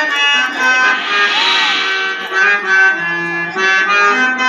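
Harmonium playing a melody of steady, held reed notes, the usual accompaniment of a Kannada stage drama.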